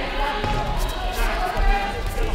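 Coaches and spectators shouting in a sports hall, with a few dull thuds from the kickboxers on the mats.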